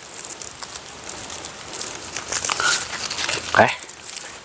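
Durian seedling leaves rustling and a paper tag crackling as a name tag is tied onto the seedling's stem by hand, an irregular run of small crackles.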